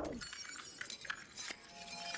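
Faint, glassy tinkling with a few light clinks, and a soft held tone coming in about halfway through.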